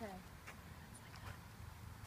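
A short spoken "yeah, okay", then quiet outdoor background: a steady low rumble with a few faint clicks.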